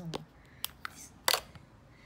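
Four short, sharp clicks of small plastic eyeshadow pots knocking together as one is picked out of a crowded makeup drawer and handled, the loudest about a second and a quarter in.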